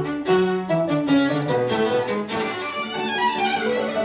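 Violin and upright piano playing classical music together, the violin in quick-moving notes over the piano accompaniment, with a fast descending run near the end.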